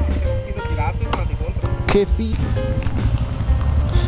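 Background music with a drum beat and a bass line moving in steps.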